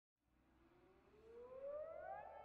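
A faint siren-like tone rising steadily in pitch, louder in the second half, like a siren winding up.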